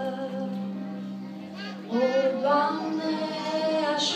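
A woman singing a hymn with a small instrumental ensemble. The accompaniment holds a steady low note at first, and the wavering sung melody comes back in about two seconds in, louder.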